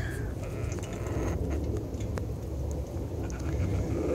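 Outdoor background noise: a steady low rumble with a few faint clicks.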